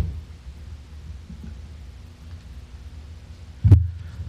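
Low, steady rumble of room noise through the chamber's microphones, then one loud thump near the end as the podium microphone is bumped.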